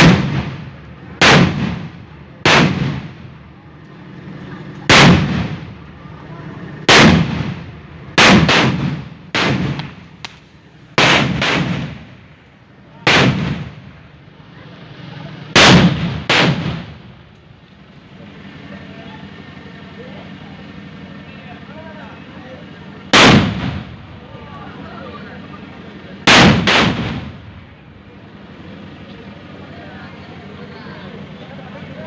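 Firecrackers exploding one after another: about fifteen loud bangs at irregular intervals, each ringing out briefly. They come thick and fast for the first sixteen seconds, then after a pause two more go off near the end.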